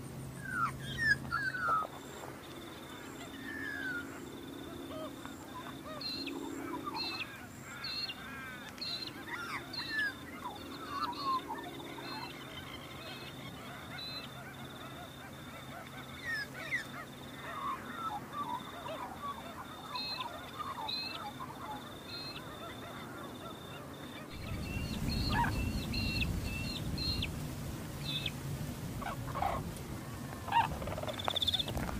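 A flock of brolgas calling: many short, overlapping rising and falling calls, loudest about a second in. A high, evenly pulsing note runs in the background for most of it, and a low rumble comes in near the end.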